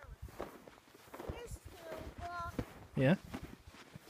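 Footsteps of a small child trudging through deep, dry snow, with the child's voice breaking in between steps.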